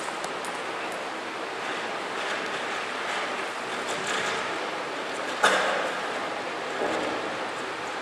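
Steady hiss of room noise in a hall, with one sharp knock about five and a half seconds in.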